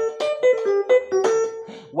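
Yamaha electronic keyboard playing a quick run of about nine single notes in a piano voice. The run is the first part of a high-praise playing pattern, the part played over the 'do' (tonic) chord.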